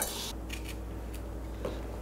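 Quiet room tone with a steady low hum and a few faint, light clicks, like small handling noises.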